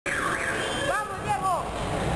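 Voices shouting in a gym around a boxing ring: a few short, high, rising-and-falling calls about a second in, over a steady background rumble.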